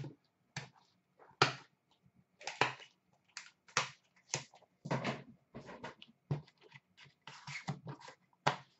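Trading cards and their boxes and packaging being handled: a string of short scrapes and rustles, roughly one a second.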